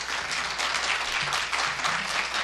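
Audience applauding: many people clapping steadily.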